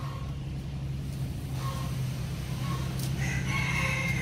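A rooster crowing: one long call starting about three seconds in, over a steady low hum.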